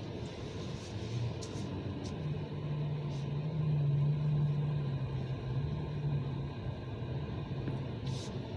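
A car's engine running at idle, heard from inside the cabin as a steady low rumble. A low hum swells from about two seconds in, peaks around the middle and eases off, with a few faint clicks.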